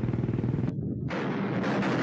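Battle sound effects of gunfire and artillery. A fast, even rattle cuts off abruptly under a second in and gives way to a steady rumbling din.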